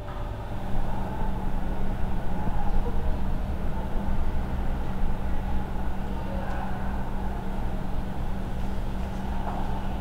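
Steady low rumble with a constant hum, engine- or traffic-like background noise.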